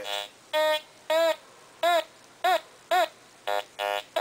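Teknetics T2 metal detector giving a quick run of about eight short beeps, roughly one every half second, as its coil sweeps over a square nail and a coin lying close together. Low, buzzy grunts near the start and end alternate with higher, clearer tones in the middle: the grunt is the detector's signal for iron, the high tone its signal for a coin.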